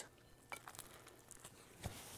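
Faint chewing of toast in near silence: a few soft mouth clicks, one about half a second in and one near the end.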